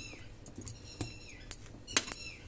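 A metal spoon mixing raw jackfruit pieces in a bowl: about four light clicks of the spoon against the bowl, with a few faint squeaks as the pieces rub together.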